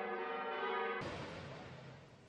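Church bell ringing, its tones hanging on steadily, cut off abruptly about a second in and replaced by a soft, fading rushing noise.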